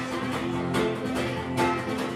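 Acoustic guitar played on its own, chords strummed in a steady rhythm.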